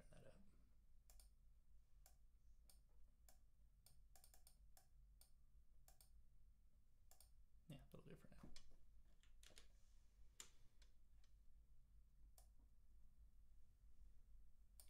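Faint computer mouse and keyboard clicks, a dozen or more at uneven spacing, over a low steady hum. A brief murmur of a voice comes about eight seconds in.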